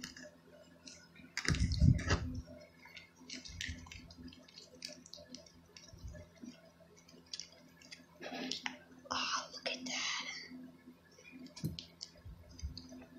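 Wooden popsicle stick stirring a thick glue, toothpaste and sugar slime mix in a small plastic cup: irregular soft clicks and scrapes of the stick against the cup. A louder dull thump comes about two seconds in.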